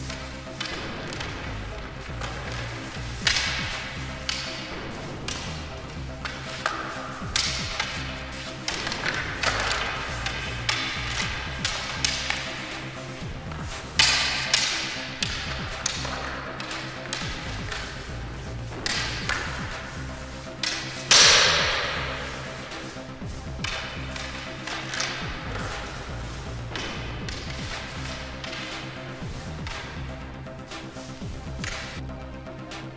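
Practice swords clashing and striking bucklers in a sword-and-buckler bout: several sharp hits spread out, each with a short metallic ring, the loudest about two-thirds of the way through. Steady background music runs underneath.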